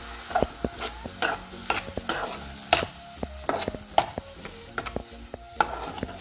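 A metal spoon stirring and scraping frying vegetables in a metal pan: irregular sharp clicks and scrapes of metal on metal, a couple a second, over a light sizzle.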